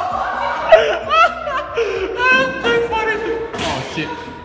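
Excited high-pitched voices shrieking and calling out in sharp rising and falling cries, with a thump shortly before the end.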